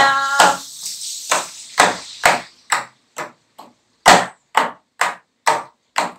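Hand-held frame drum beaten with the palm in a steady rhythm of about two strokes a second, some strokes louder than others.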